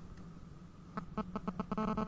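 Distorted telephone line on air: a quick run of buzzy clicks starting about a second in, then a held buzz. The caller's line is overloading, which the host calls saturation on the studio's phone switchboard.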